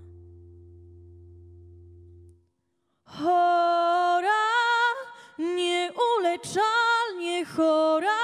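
A low held accompaniment note fades away, then about three seconds in a young woman starts singing loudly into a microphone: a phrase of long, gliding notes in Polish.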